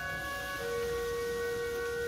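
Eighth-grade concert band playing slow sustained chords of held wind notes, with a new lower note entering about half a second in and held.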